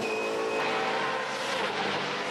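Ford Falcon FG X Supercar's 5.0-litre V8 race engine running at speed on track, its note holding steady.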